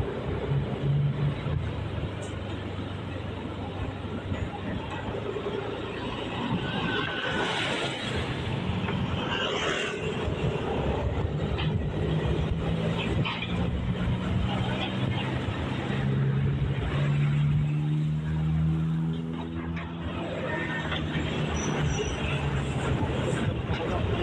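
Engine and road noise of a moving vehicle, heard from inside it, with indistinct voices in the background.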